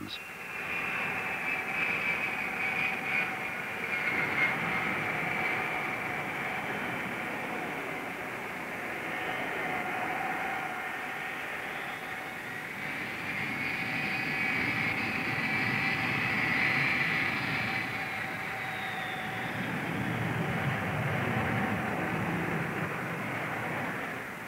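Jet airliner engines running on the runway: a steady roar with a high-pitched whine that swells and fades as aircraft pass, loudest a little past the middle.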